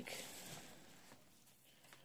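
Near silence, with faint rustling from a faux-leather tablet folio case and its foam packing sheet being handled, fading out after about a second, and a faint tick near the end.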